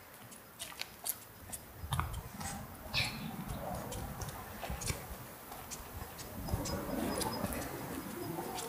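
Scattered small clicks and rustles with an uneven low rumble from about two seconds in: handling noise of a hand-held camera carried while walking. A brief high chirp sounds about three seconds in.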